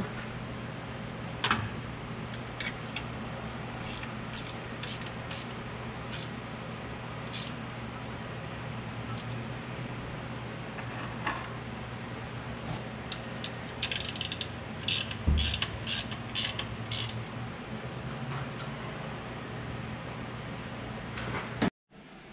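Hand ratchet clicking in short runs and metal tools clinking as a drive belt is tightened on a V8 engine, over a steady low hum. The clicks come thickest a little past the middle.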